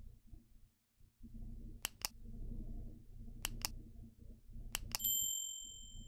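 Subscribe-button animation sound effect: three pairs of mouse clicks about a second and a half apart, then a bright bell-like notification ding about five seconds in that rings out for about a second, over a faint low rumble.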